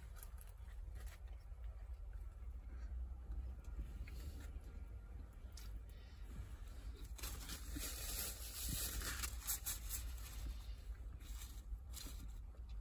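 Faint chewing of a mouthful of soft, saucy sandwich, with small rustles and scrapes of a cardboard sandwich box, over a low steady hum.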